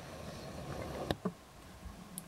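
Ranitomeya ventrimaculata poison dart frogs calling to each other with a low buzz, strongest in the first second, over a steady low hum. A single sharp click comes about a second in.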